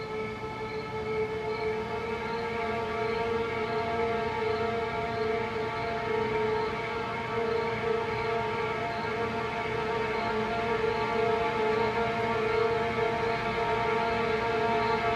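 Suspenseful background music: a sustained droning chord that slowly swells in loudness, with a faint high tone pulsing steadily above it.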